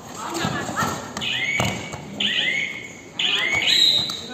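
Sports shoes squeaking on a kabaddi mat as players cut and stop, three sharp squeaks about a second apart, the last the loudest, over players' shouts and thudding footfalls.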